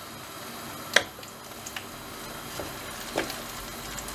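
Dry-yufka börek cooking in a wide aluminium pan over a gas burner at full flame, with a steady sizzling hiss. A sharp click comes about a second in, followed by a few lighter knocks as the pan is turned.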